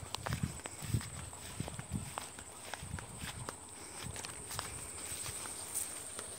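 Footsteps on vegetation-covered ground in a sugarcane field, with dry leaves and stalks crackling and brushing. The steps are strongest in the first two seconds and then grow fainter, over a steady high-pitched buzz.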